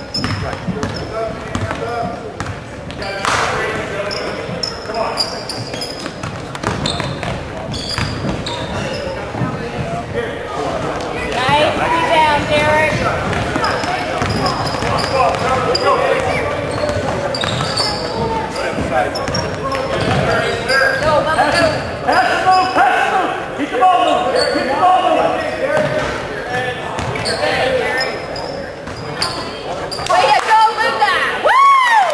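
Basketball being dribbled and bounced on a hardwood gym floor during live play, with spectators' and players' voices; the voices get louder about halfway through.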